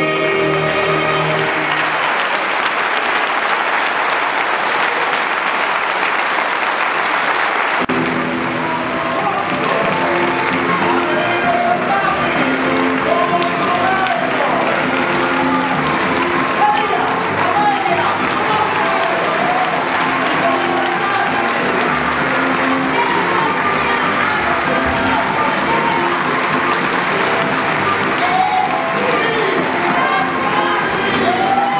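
Theatre audience applauding as the cast's sung finale ends about a second in. About eight seconds in, music starts up again and the applause carries on over it.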